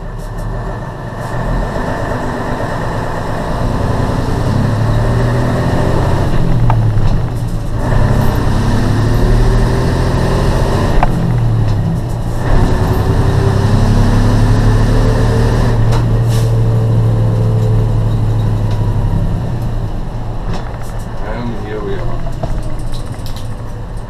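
Mercedes truck's diesel engine heard from inside the cab, pulling away through the gears: the engine note climbs and drops at each of two gear changes, then holds steady at cruising speed before easing off near the end.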